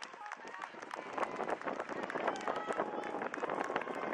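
Spectators at a baseball game talking and calling out at once, many overlapping voices.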